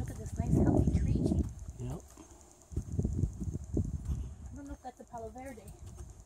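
Footsteps and wind or handling rumble on a handheld camera's microphone while walking, with low knocks about three seconds in. A short snatch of voice comes near the end.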